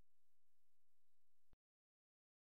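Near silence after the song's fade-out: a faint hiss that cuts off to total silence about one and a half seconds in.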